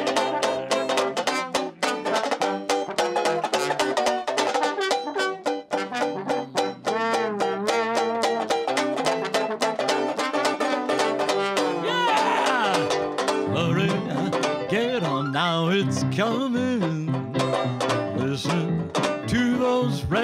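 Dixieland-style jazz: a slide trombone solo with swooping, bending notes over a steadily strummed banjo.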